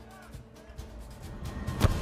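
Background music swelling, with a sharp thud near the end.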